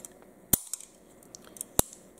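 Two sharp metallic clicks about a second and a quarter apart, with a few faint ticks, from the hammer and lockwork of a Sig Sauer 1911 pistol being worked by hand during a check of its half-cock notch.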